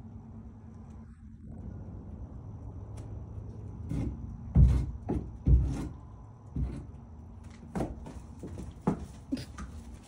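Horse's hooves thudding on the barn's wooden floor and door sill as it steps out through the doorway. Several heavy thuds start about four seconds in, the two loudest close together, followed by lighter, more scattered knocks.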